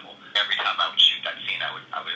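Speech only: a person talking, the voice thin and narrow like sound over a telephone line.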